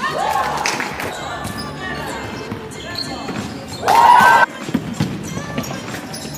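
Basketball game in a sports hall: a ball bouncing on the court with shouted voices from players or the sideline. The loudest shout comes about four seconds in, with a shorter one right at the start.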